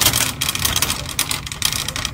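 Red plastic-and-wire shopping cart being pushed, its wheels and basket giving a dense, irregular rattle.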